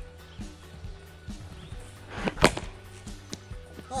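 A cricket ball struck once by a cricket bat about two and a half seconds in, a single sharp crack over background music; the ball was hit slightly off the middle of the bat.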